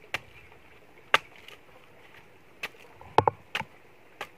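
Machete chopping into the husk of a young coconut: about six sharp chops at uneven intervals, three of them in quick succession near the end.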